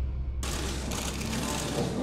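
Low, deep tail of background music cuts off abruptly less than half a second in. It gives way to the steady hiss of a large hall's ambience, with faint paper rustling as an envelope is opened.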